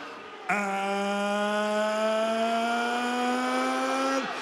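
Ring announcer's drawn-out "Aaaand", a single held vowel that starts about half a second in and lasts about three and a half seconds, slowly rising in pitch. It is the suspense-building lead-in to naming the winner of a unanimous decision.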